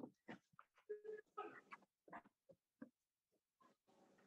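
Faint, short knocks and scuffs from a boy climbing a wooden bunk bed ladder and hauling himself onto the top bunk, coming in a string of separate brief sounds.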